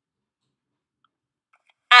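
Near silence between narrated sentences, with a woman's voice starting to speak just before the end.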